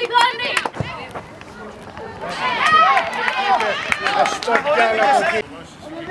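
Players' voices shouting and calling out on a football pitch, several at once, from a little past two seconds in to near the end, after a few sharp knocks in the first second.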